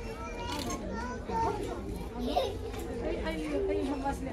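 Children's voices and people chattering over one another, with no clear words.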